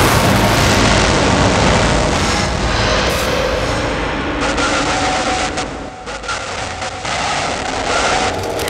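Loud, dense rumbling noise that eases off and dips about six seconds in, with a few sharp clicks around then.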